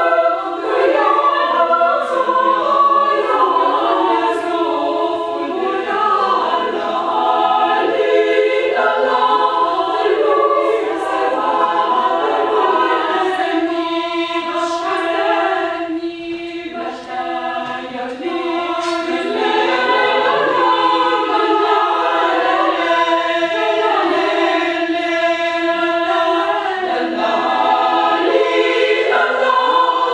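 Women's choir singing a cappella in several parts, with held chords and a brief softer passage about halfway through.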